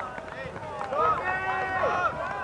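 Voices shouting and calling out during a soccer game, with one long held call near the end.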